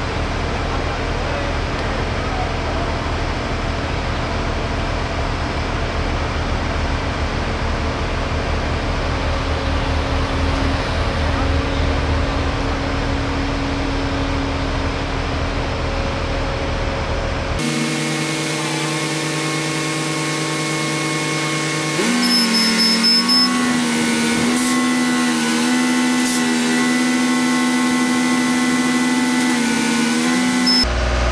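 Heavy machinery engine, most likely the mobile crane's diesel, running steadily with a low rumble while it lifts a load. Past the middle the sound changes abruptly to a smoother engine hum that steps up a little in pitch a few seconds later.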